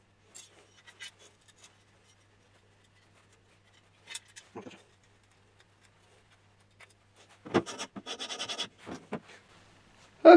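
Small hand-assembly noises as a bolt is fitted into a 3D printer kit part with a hand tool: scattered light clicks and scrapes, then, from about three-quarters of the way in, a quick run of rapid ticks.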